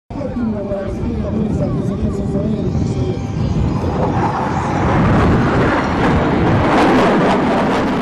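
A Northrop F-5 fighter jet's twin turbojets rushing past in a low fly-by, the loud roar building from about three seconds in and peaking in the second half. Spectators' voices are heard under it at first.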